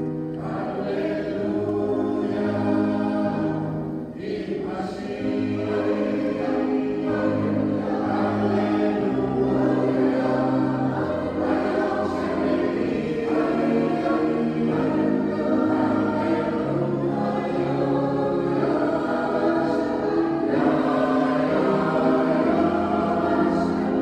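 Mixed choir of men's and women's voices singing, moving through held chords that change every second or so.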